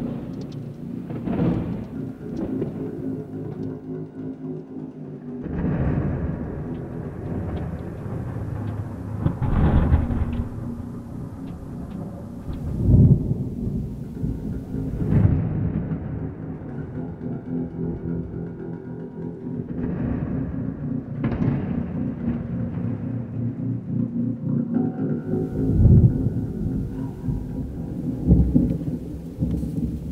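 Several rolling thunder rumbles from a nearby thunderstorm, about seven or eight swelling and fading, the loudest near the middle and near the end, over background music with sustained tones.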